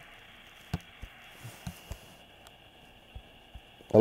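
Faint telephone-line hiss with a few soft, scattered clicks during a pause in a phone call.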